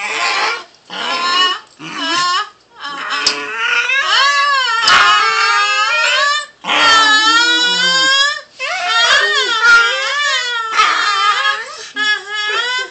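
A small dog vocalising while it rolls on its back: a string of drawn-out, wavering whines, one after another, the longest lasting about three seconds.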